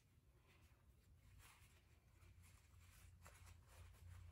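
Near silence: room tone with a steady low hum and a few faint, brief rustles.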